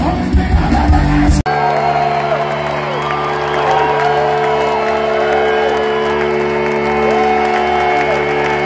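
Loud live rock band playing in an arena, heard from the crowd. After an abrupt cut about a second and a half in, a steady chord is held out while the crowd whoops and cheers over it.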